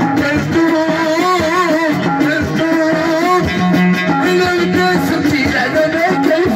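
Live Moroccan chaabi music played loud through amplifiers: a violin carries a wavering, ornamented melody over plucked lotar (watra) strings and a steady beat.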